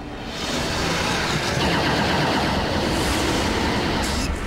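Sci-fi spacecraft flight sound effect: a dense rushing engine noise that swells about half a second in and then holds, with music underneath.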